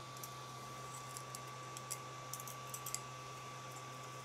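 Faint, scattered light clicks and ticks of a freshly 3D-printed plastic part being lifted off the printer bed and turned over in the fingers, over a steady low hum and a thin steady high whine.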